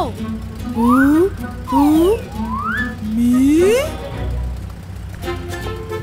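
Three short wordless vocal sounds from cartoon characters, each rising in pitch, then light background music with plucked notes beginning about five seconds in.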